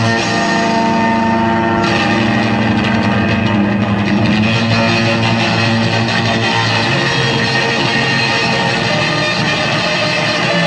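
Live blues rock from a guitar, bass and drums trio: an electric guitar plays a lead line over the band, with no singing.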